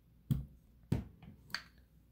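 Three short, sharp clicks a little over half a second apart, with a few fainter ticks: the handling of wooden revolver grip panels and parts being picked up from a table.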